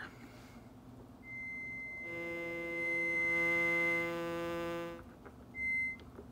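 Behringer Neutron analog synthesizer sounding two sources summed together: a pure, steady high tone from the self-oscillating resonant filter comes in about a second in, then a buzzy low tone from the LFO run in its audio range joins it. The high tone stops around four seconds and the low tone fades out about a second later, with a short blip of the high tone near the end.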